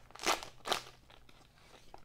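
Plastic wrapper of a trading-card rack pack crinkling as it is torn open and the cards pulled out: two short crackly bursts in the first second, then faint handling.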